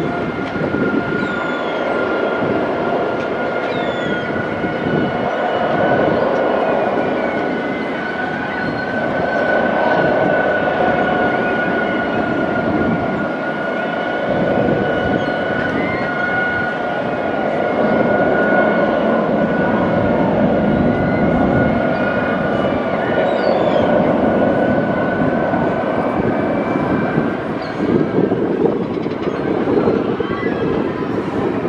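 Steady mechanical running noise from a moving vehicle, with a high whine held throughout and faint scattered squeaks over it.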